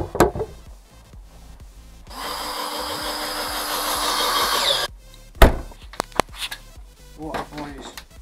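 Cordless drill driving screws into the plywood lid of a subwoofer enclosure: about three seconds of steady whirring that gets slightly louder as the screw goes in. It is followed by a single sharp knock, the loudest sound, and a couple of light clicks.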